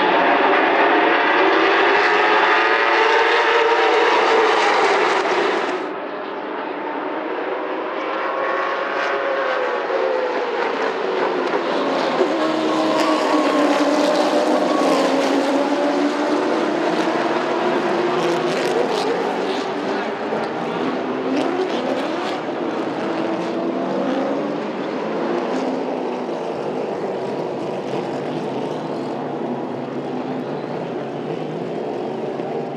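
A pack of late model stock car V8 engines at full throttle, many engine notes rising and falling together as the field races through the turns. Partway through, a sharp bang and a run of scattered knocks come as cars crash and scrape into each other.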